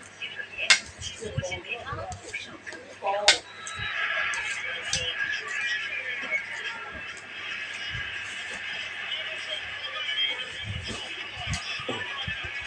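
Cutlery clinking and scraping on a stainless steel plate, with two sharp, ringing clinks in the first few seconds. From about four seconds in, a steady background of voices sets in.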